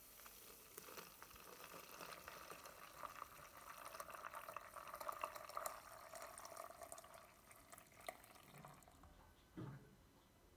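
Ice-cold water poured slowly from a glass measuring jug onto coffee grounds in a Bodum iced coffee maker's glass carafe: a faint, steady trickle that thins out near the end. A brief soft knock comes just before the end.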